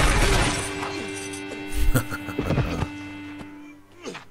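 Film soundtrack music with held tones, a loud crash at the very start and a few sharp hits about two seconds in, the music then dying down.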